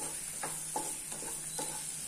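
A spatula stirring and scraping sliced onions, capsicum and carrot around a nonstick frying pan in an irregular run of strokes a few times a second, over the steady sizzle of the vegetables frying in oil.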